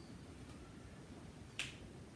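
A single short, sharp click over quiet room tone, about one and a half seconds in.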